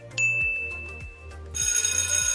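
Quiz countdown sound effects over background music with a steady beat: a high ding as the timer reaches its last second, then, about one and a half seconds in, a bright ringing alarm bell signalling that time is up.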